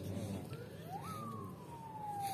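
A faint siren-like wail: one tone that rises quickly for about half a second, then falls slowly, under quiet hall ambience.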